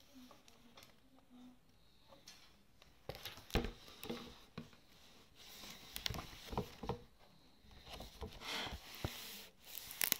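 Faint handling noise from hands and a picture book on a table: scattered light taps and rustles, with a sharper knock about three and a half seconds in.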